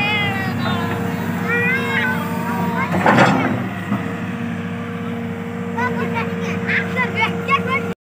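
Tata Hitachi Zaxis 210LCH excavator's diesel engine running steadily under hydraulic load while it digs. A loud crunching scrape of the bucket in soil comes about three seconds in. Short, high warbling calls are heard over the drone near the start and again in the last couple of seconds.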